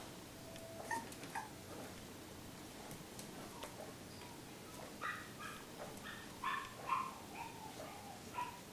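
Five-week-old puppies giving short high yips and whines, a quick run of them about five seconds in, among light clicks and taps.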